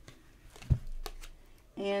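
Tarot cards being handled and drawn from the deck, with a single dull thump about a third of the way in, then faint rustling of the cards.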